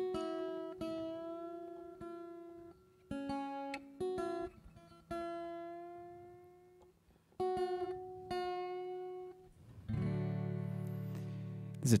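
Acoustic guitar being tuned: single strings plucked one at a time and left to ring, about four notes in turn, some bending slightly in pitch as a peg is turned. A fuller strummed chord comes about ten seconds in.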